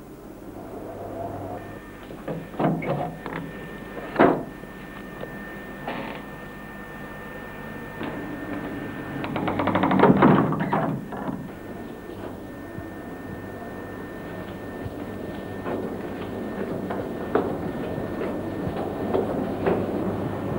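Scattered knocks and bumps, with a louder, longer rumbling clatter about halfway through, over a faint steady high-pitched tone.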